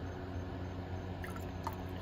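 Quiet liquid sounds of a solution being poured into a glass beaker of chilled bleach and lye, over a steady low hum.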